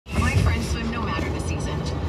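A voice speaking in a broadcast advertisement, over a steady low rumble from a vehicle in motion.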